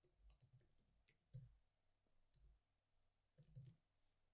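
Near silence, broken by a few faint, scattered clicks of computer keyboard typing.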